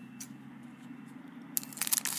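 Mostly quiet room, then near the end a short burst of crisp crinkling and crunching as scissors cut into the top of a foil trading-card packet.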